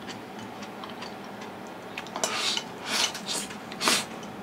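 Chopsticks ticking faintly against a bowl, then four or five short, hissy slurps from about two seconds in as the last of the noodles are shoveled from the bowl held to the mouth.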